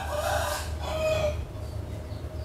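A rooster crowing once, a hoarse call lasting about a second and a half, over a steady low rumble.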